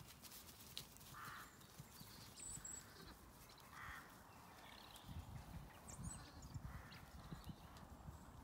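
Quiet outdoor sound: a couple of short distant crow caws, a faint high bird chirp, and soft footfalls on grass in the second half.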